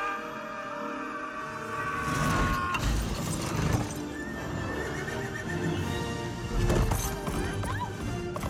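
Animated-film soundtrack: a horse neighing and hooves clattering under a dramatic orchestral score, with heavy thumps about three seconds in and again near seven seconds, the second as the horse lands from a leap.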